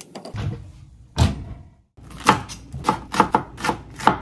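Kitchen knife chopping green onions on a bamboo cutting board: quick, even strikes about four a second, starting about two seconds in. Before that, light handling sounds and a single thump as frozen gyoza are set into a frying pan.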